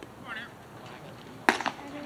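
Two sharp knocks in quick succession about one and a half seconds in, the first much louder than the second, over faint voices.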